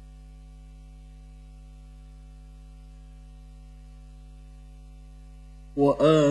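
Steady electrical mains hum on the sound system, a set of fixed low tones. Just before the end, a man's voice starts loudly in melodic, chanted Quran recitation into a handheld microphone.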